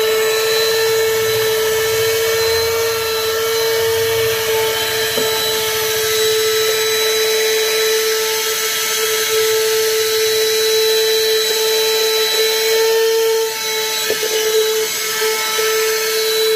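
Handheld 12-volt plug-in car vacuum cleaner running with a steady motor whine as its crevice nozzle sucks along a car floor mat. The whine wavers and dips briefly near the end.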